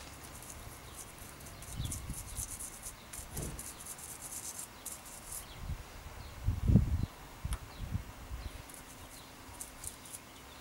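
Rapid fine scratching of a small tool scrubbing the plastic and metal ratchet spool of a disassembled bicycle trigger shifter, cleaning out old hardened grease. It runs for about the first five seconds and comes back near the end, with low bumps from handling the part, the loudest a little before seven seconds in.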